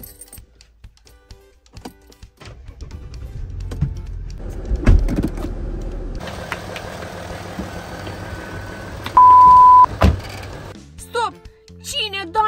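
An Audi car's engine started with the ignition key and then idling with a low, steady rumble, with two thunks about five and ten seconds in. Shortly before the second thunk comes a loud, steady electronic beep lasting under a second.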